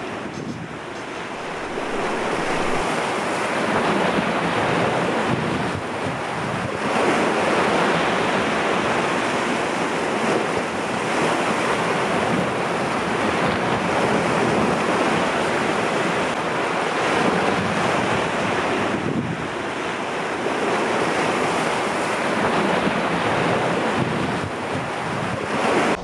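Sea surf breaking and washing over rocks: a continuous rush of foaming water that swells and eases, dipping briefly about six seconds in and again around nineteen seconds.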